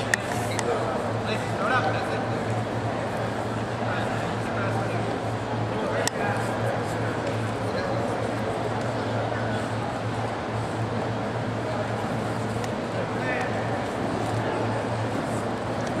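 Gymnasium crowd noise: many spectators' voices and shouts running on steadily over a low hum, with a sharp knock about six seconds in.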